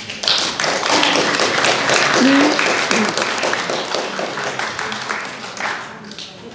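Audience applauding, many hands clapping together, dying away near the end.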